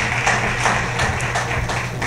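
Audience applause: many hands clapping in a dense patter, over a steady low hum.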